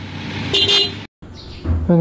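Horn of a Kawasaki Z900 motorcycle giving a short honk about half a second in, over a steady background hum; the sound cuts off abruptly just after a second.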